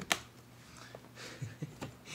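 A single sharp plastic click, then soft rustling and a few light ticks, as the plastic side-brush hubs on the underside of an upturned Deebot N79 robot vacuum are handled for cleaning.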